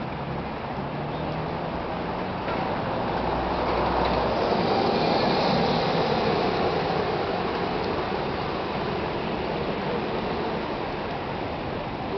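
A bus passing close by in street traffic. Its sound swells over a couple of seconds to a peak and then slowly fades, over a steady background of traffic noise.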